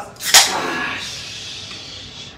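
Crown cap popped off a Corona Familiar glass beer bottle with one sharp crack, followed by a hiss of escaping carbonation that fades over about a second and a half.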